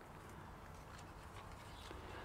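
Near silence: only faint, steady background noise, with no distinct sound.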